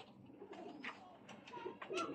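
Domestic pigeons cooing faintly in a loft.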